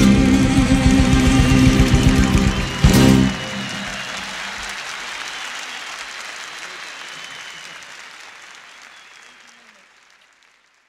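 A live band holds the song's last chord and closes it with a sharp final hit about three seconds in. Audience applause follows and fades steadily away.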